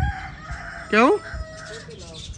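A rooster crowing, a faint held call behind a man's single short spoken word about a second in.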